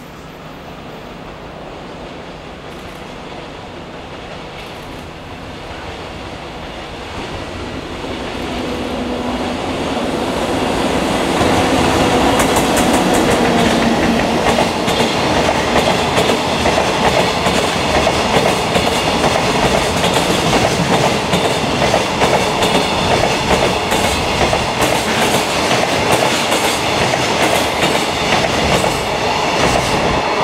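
A JR Freight container train hauled by an EF64 electric locomotive approaching and passing: the rolling noise grows louder over the first dozen seconds. It then holds steady as the long line of container flatcars goes by, the wheels clicking rhythmically over the rail joints.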